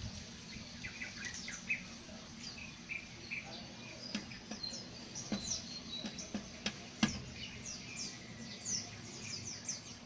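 Rooster's beak tapping on window glass as it pecks at its own reflection: a few sharp taps, the loudest about seven seconds in. Small birds chirp throughout.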